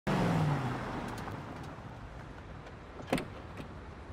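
A car pulling up and slowing to a stop, its engine note dropping in pitch and fading. A single short knock comes about three seconds in.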